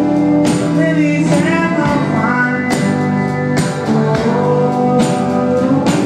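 Live folk-rock band music: strummed acoustic guitar and mandolin with a steady pulse, and voices singing a wordless line.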